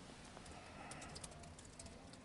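Faint, light clicks scattered over quiet room tone, most of them in the middle of the stretch.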